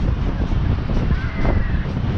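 Wind rushing over the microphone of a rider on a spinning swing ride high in the air: a steady, dense low rumble.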